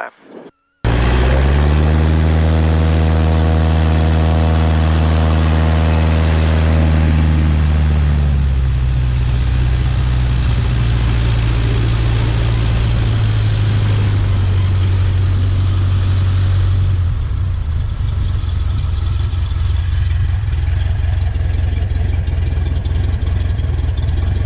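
Kitfox light aircraft's engine and propeller running at high power on the runway, a steady drone for the first several seconds that turns rougher and noisier from about eight seconds in, with wind rushing over the wing-mounted camera. The sound eases from about seventeen seconds in as power comes back for the braking stop.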